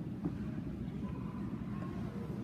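Low, steady rumble of background noise in a crowded church between spoken parts of the rite, with no clear single event.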